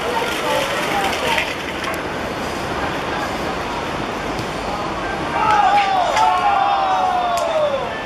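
Footballers' voices calling on an outdoor pitch over steady background noise; in the second half, louder drawn-out shouting that falls in pitch.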